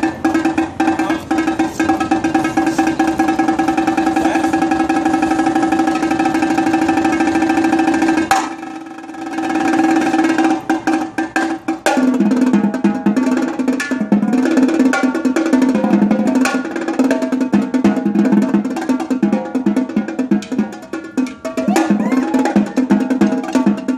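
Marching tenor drums (quads) played with sticks in a fast solo: dense, continuous strokes on steady drum pitches for about eight seconds, a short drop-off, then rapid runs of strokes moving around the drums.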